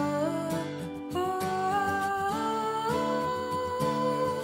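A woman singing the B natural minor (Aeolian) scale upward, one held note after another in even steps, over a soft instrumental accompaniment.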